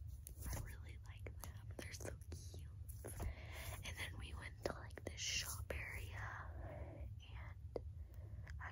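A young woman whispering close to the microphone, broken by short sharp clicks, over a steady low hum.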